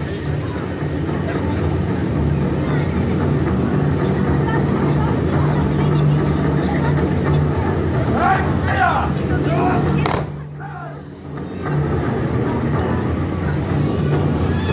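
Steady low rumble and murmur of an outdoor crowd, with a brief voice rising above it about eight seconds in. The sound drops away for a moment about ten seconds in, then returns.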